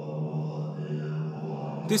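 Buddhist monks chanting in unison, a low drone held on one steady pitch.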